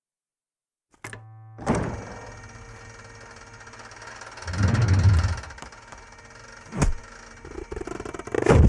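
Soundtrack sound effects: silence for about a second, then a steady low hum with a sharp thud, a louder low rumble about halfway through, and another sharp thud near the end.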